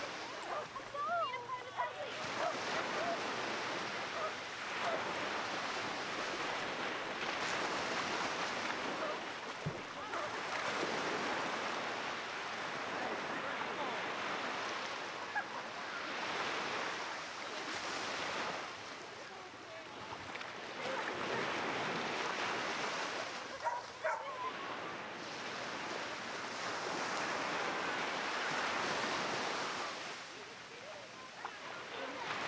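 Small surf breaking and washing up the sand, swelling and fading every few seconds. Brief voices and dog sounds come through about a second in and again about three quarters of the way through.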